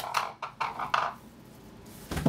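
Cardboard shipping box being moved aside: a few light knocks and two short scraping rustles of cardboard in the first second, then quiet room tone.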